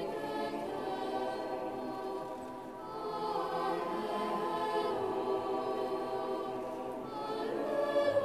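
A choir singing with long held notes, with a brief dip in level about three seconds in.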